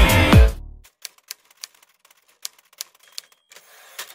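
Electronic music with a strong beat ends abruptly about half a second in. It is followed by a quiet, irregular run of sharp clicks, like typewriter keystrokes: sound effects for animated text, with a brief faint tone near the end.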